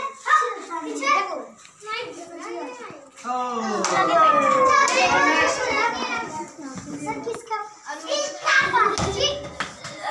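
Many children's voices shouting and chattering over one another while they play a group ball game, with a brief low thud near the end.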